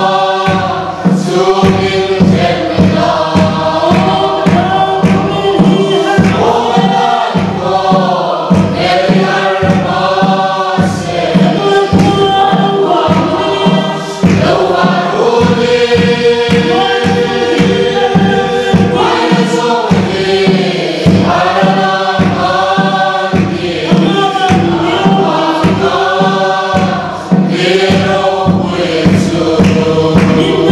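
A mixed group of men and women singing a gospel hymn together, with a steady drumbeat keeping time underneath.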